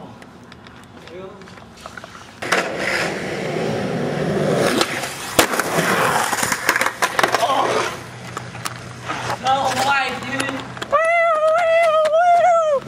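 Skateboard wheels rolling hard over rough concrete, a loud gritty rumble that starts about two and a half seconds in, with sharp clacks of the board. Near the end a skater who has just fallen cries out in one long, held yell of pain.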